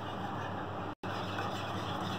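Wire whisk stirring a thin chocolate milk mixture in a saucepan, a steady stirring noise that drops out abruptly for an instant about a second in.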